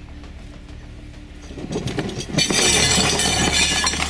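Background music, then from about halfway a loud, chaotic clatter and crash as an elephant charges into a table laid with plates and cutlery and knocks it over.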